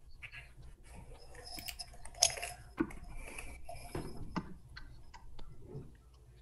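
Marker writing on a small whiteboard: short scratchy strokes, with a few brief squeaks and small knocks between them.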